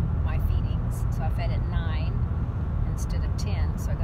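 Steady low road and engine rumble inside a moving car's cabin, with a woman's voice talking at intervals over it.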